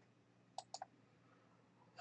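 Two faint computer mouse clicks in quick succession, about a quarter second apart, over near silence.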